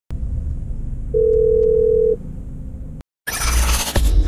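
Low car-interior rumble with a single steady electronic beep lasting about a second. After a brief cut to silence near the end, a loud whooshing intro sound effect begins.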